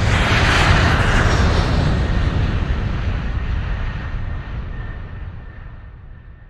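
Airplane flyby sound effect: a loud rushing noise that peaks about half a second in and then slowly fades away.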